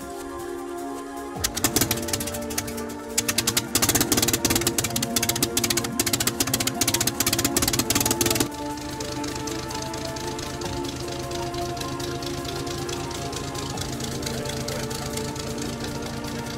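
Background music over a vintage aero engine running: a dense, rapid clatter from about a second and a half in that drops at about eight and a half seconds to a steadier, lower running sound.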